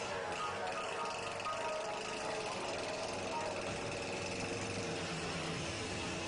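Chainsaw running steadily, with music playing under it.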